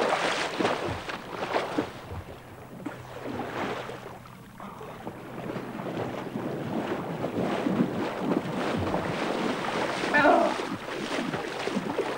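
Heavy splashing of sea water at the start, then a quieter spell, then the swish and slosh of a person wading through shallow water, getting louder towards the end.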